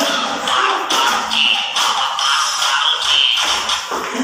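Upbeat dance music with a regular beat, played for a dance routine, with dancers' feet shuffling and tapping on the floor.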